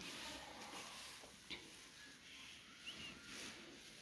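Near silence: faint room tone, with a soft click about a second and a half in and a faint short chirp near the end.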